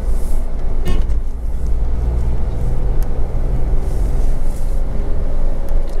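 Renault Triber's three-cylinder petrol engine and road noise heard from inside the cabin while cruising at about 60–70 km/h: a steady low rumble with a faint engine hum.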